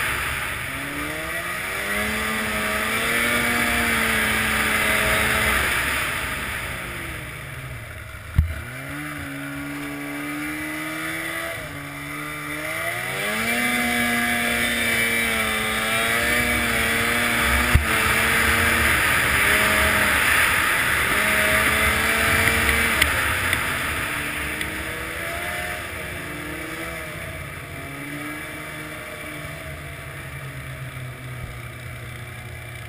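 Snowmobile engine speeding up and easing off several times as the machine rides along a trail, over a steady rushing hiss. Two sharp knocks come about 8 and 18 seconds in.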